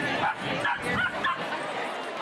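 An animal's short calls, four or five in quick succession within about a second and a half, over the chatter of a street crowd.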